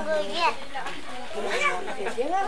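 Voices of a gathered crowd talking, with high-pitched voices, likely children's, among them.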